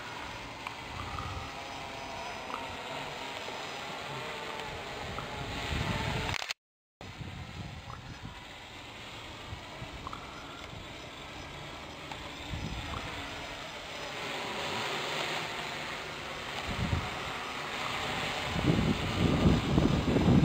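A radio-controlled hexcopter's six electric motors and propellers whirring in flight on a 3-cell LiPo pack, a steady whir that grows louder near the end as the craft comes closer. The sound drops out briefly about six and a half seconds in.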